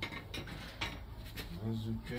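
Garden hand tools and a plastic seedling tray being handled while planting seedlings: a few short clicks and scrapes, spread through about a second and a half.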